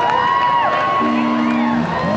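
Long whistle-like tones held and gliding up and down over a parade crowd, with a low two-note horn-like tone sounding for under a second about halfway through.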